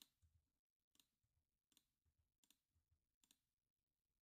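Near silence, with a few very faint, evenly spaced computer mouse clicks as spreadsheet cells are picked one after another.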